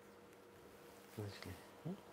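A man's short wordless vocal murmurs, three brief hum-like sounds about a second in, the last rising in pitch, over faint room tone with a steady low hum.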